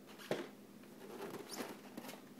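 A cardboard toy box being handled and turned: light scratching and rubbing of fingers on the cardboard, with a short tap about a third of a second in and another past the middle.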